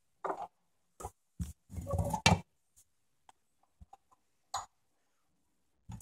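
Handling sounds on the dirt separator tank of a 1925 Spencer turbine vacuum: a string of separate clicks and knocks from its door and spring-loaded catches, with a longer scraping rustle about two seconds in.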